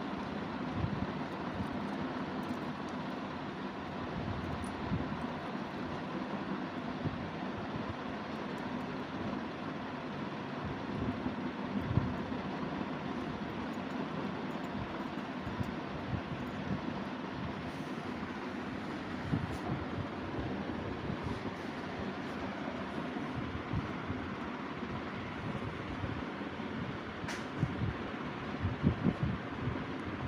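Steady background hiss and rumble with scattered soft low bumps, and one faint sharp click late on.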